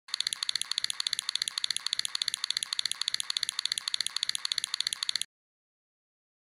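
Rapid, evenly spaced clicking, about eight clicks a second, mostly high-pitched, that cuts off abruptly about five seconds in: an added clicking sound effect.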